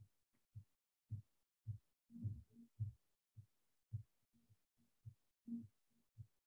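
Faint, muffled low thumps, roughly two a second and somewhat uneven, each cut off sharply into silence; the strongest come about two to three seconds in.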